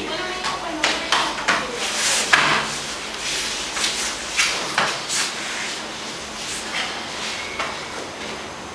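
Two grapplers in cotton gis scrambling on a mat: fabric rustling and brushing, with hands and bodies slapping and scuffing on the mat in short, irregular strokes.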